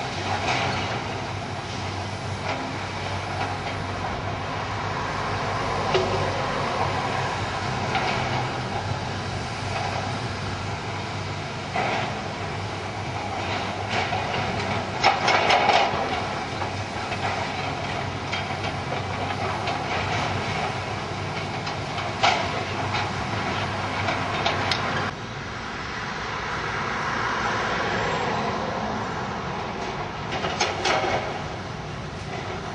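Hydraulic excavators demolishing a building: their diesel engines run steadily while rubble and timber clatter and scrape under the buckets, with several sharp crashes, the loudest about halfway through.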